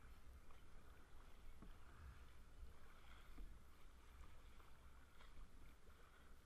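Faint sloshing of sea water around a paddled kayak, with a low wind rumble on the microphone.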